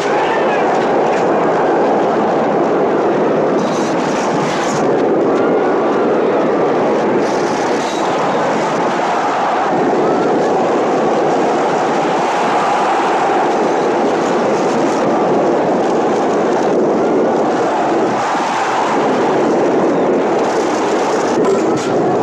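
Chariot race: a continuous loud rumble of galloping horse teams and chariot wheels on the track, with crowd cheering mixed in.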